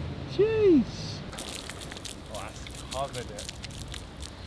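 A short rising-and-falling vocal exclamation, then a run of quick crackling splashes as water is flung from plastic bottles onto a dry stone fountain bed.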